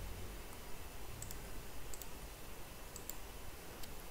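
Faint, scattered clicks of a computer mouse and keyboard, a handful over a few seconds, over low room noise.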